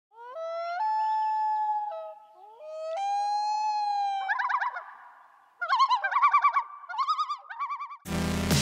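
Intro sound effect of pitched, whistle-like tones: one tone steps up and holds, a second glides upward and holds, then several rapid warbling trills follow.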